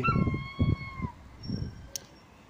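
A gull calling: one high, drawn-out call lasting just under a second that drops slightly in pitch as it ends. A short sharp click comes near the end.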